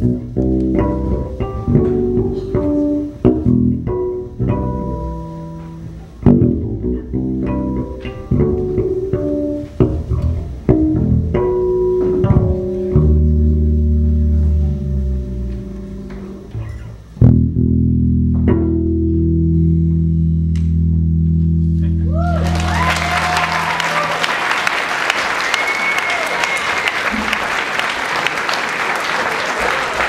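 Unaccompanied electric bass guitar playing a solo piece built on ringing harmonics: separate plucked notes, then long held low notes to close. About 22 seconds in, the last note gives way to an audience applauding and cheering, with a few whistles.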